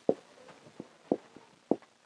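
A few short taps, about four, over faint room tone.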